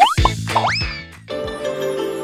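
Title-card intro jingle: music with cartoon sound effects, quick rising pitch slides over drum thumps in the first second. A steady held chord comes in about a second and a half in.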